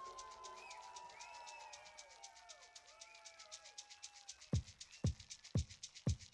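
Quiet electronic dance music played live: gliding, warbling synthesized tones over a fast, steady ticking hi-hat. About four and a half seconds in, a deep kick drum joins at about two beats a second.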